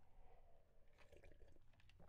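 Faint sips and swallows from a drink taken close to the microphone, with a few small mouth clicks in the second half; otherwise near silence.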